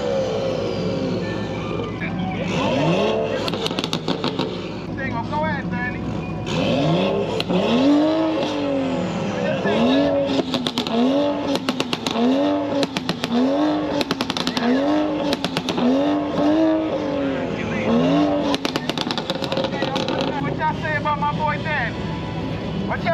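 Dodge Charger SRT8's Hemi V8 held on a two-step launch limiter: a few separate revs, then from about seven seconds a steady run of revs rising and falling about once a second, each with a burst of rapid exhaust pops.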